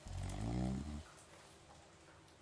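A sleeping man gives one low snore, lasting about a second.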